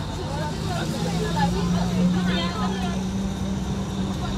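Bus engine running with a steady low hum heard from inside the cabin, rising slightly in pitch about a second in as it speeds up, under the chatter of passengers.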